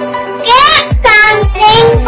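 A child singing in long, sliding syllables over an electronic backing track with a steady beat; the voice comes in about half a second in.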